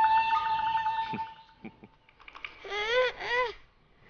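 A young boy whimpering in two short rising-and-falling cries, frightened. Before them, for about the first two seconds, a held musical note with a quivering line above it.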